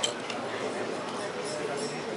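Light metallic clinks and rattles over steady crowd chatter: a shake table running the Northridge earthquake ground motion under a wooden model tower loaded with steel weights. The sharpest clink comes right at the start, with a couple more near the end.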